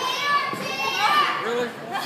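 High-pitched children's voices yelling and shouting, overlapping with one another.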